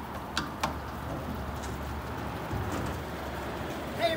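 Outdoor background noise: a steady low rumble under a faint even hiss, with two sharp clicks about half a second in.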